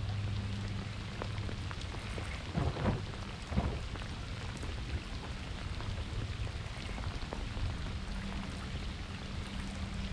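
Steady rain falling on lake water and the boat, with a low hum underneath and two brief louder bursts about three seconds in.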